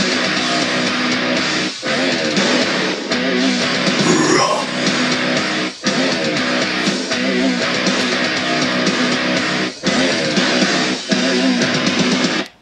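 Metalcore song with heavy distorted electric guitars and bass playing loud, breaking off for short stops about every four seconds.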